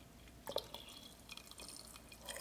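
Hot water poured in a thin stream from a kettle into a ceramic teapot, a faint trickle with small drips and splashes, the strongest about half a second in.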